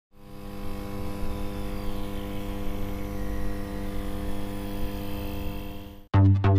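A steady low droning hum of several held tones with a rumble beneath it, fading in at the start and dying away just before the end.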